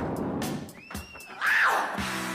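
A funk band playing live: a few sharp drum hits, a thin high tone that bends up and then down just after the middle, then a loud, short, high cry that rises and falls about one and a half seconds in.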